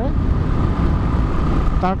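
Royal Enfield single-cylinder motorcycle riding at highway speed: a steady, loud rumble of engine, wind and road noise on the rider's microphone, with a faint steady whine above it. A voice starts again near the end.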